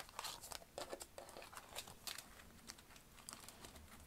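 Oracle cards being gathered off a table and squared into a stack: faint rustling and light clicks of card sliding against card, busier in the first couple of seconds.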